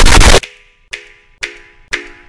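Loud, heavily distorted noise that cuts off abruptly about half a second in, followed by short pitched notes with sharp attacks, about two a second, from a logo's audio pushed through glitch effects.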